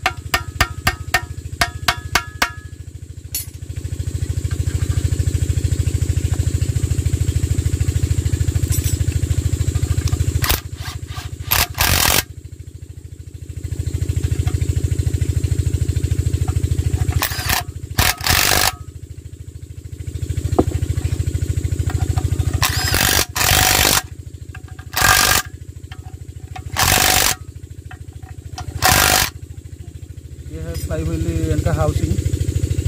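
Hammer taps in quick regular succession for the first couple of seconds, then a Bosch cordless impact wrench driving the bolts of the crankshaft bearing housing plate on a Kirloskar AV1 diesel engine's crankcase: stretches of steady motor drone broken by short, loud rattling bursts of hammering as the bolts tighten.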